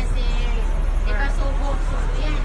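Hong Kong double-decker tram running, a steady low rumble from the moving car, with voices talking on board about a second in.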